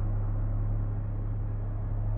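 Steady, muffled low rumbling drone with no distinct events, the dark sound-bed of a trailer soundtrack.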